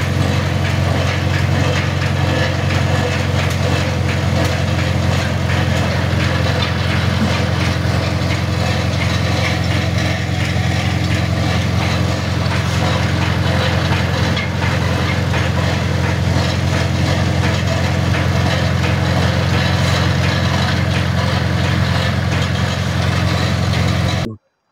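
A heavy machinery engine running steadily at an unchanging speed: a deep, even drone with a rough, noisy edge.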